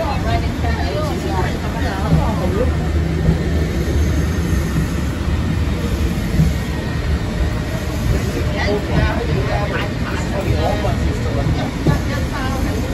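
Peak Tram funicular car running on its track, a steady low rumble heard from inside the car, with people talking now and then over it.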